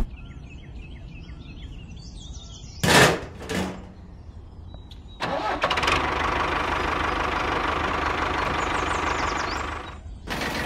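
A small motor on a miniature model tractor starts suddenly about five seconds in and runs steadily with an even hum. Before it, faint bird chirps and two brief loud bursts of noise around three seconds in.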